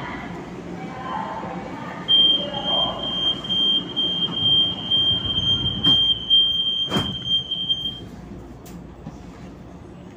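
Light-rail train's door-closing warning buzzer: a steady high beep starting about two seconds in and lasting about six seconds, with a sharp knock shortly before it stops.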